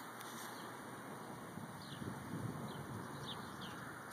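Faint outdoor background noise with several short, faint bird chirps in the second half.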